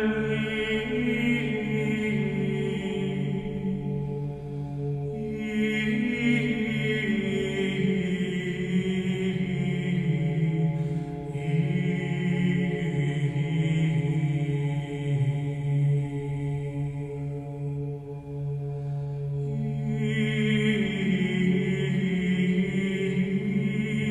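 Slow sung Orthodox church chant: voices holding long notes and moving in steps from one held pitch to the next, as a musical interlude in a religious radio broadcast.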